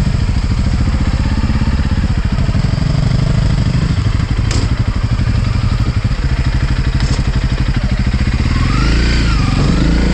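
Honda CRF dual-sport motorcycle's single-cylinder four-stroke engine running at low revs with an even, steady beat, then revving up as the bike accelerates away near the end. Two short sharp clicks come through in the middle.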